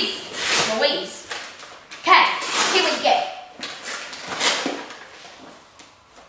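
Children talking indistinctly over several short bursts of crinkling and rustling gift-wrapping paper, fading toward the end.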